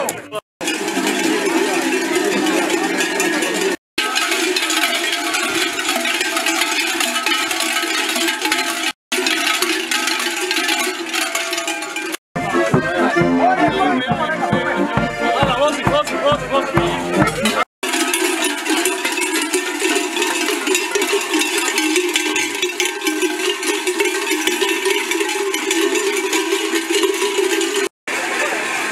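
Large cowbells worn by a troupe of zvončari carnival bell-ringers, clanging together continuously as they walk. In one stretch accordion music plays along with the bells. The sound breaks off for a moment at several points.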